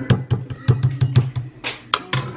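Background music with a quick drum beat: short, sharp drum hits about five or six a second over a steady low bass.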